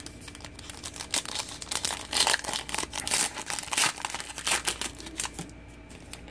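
Foil wrapper of a trading-card pack crinkling and tearing as it is opened by hand, a run of irregular crackles that stops shortly before the end.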